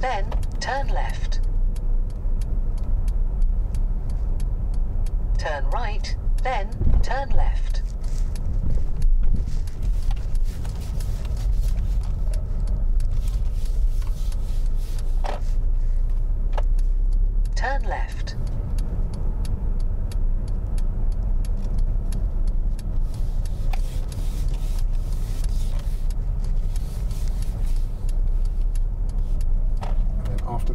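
Steady low rumble of a car being driven slowly, heard from inside the cabin, with a few short bursts of voice over it.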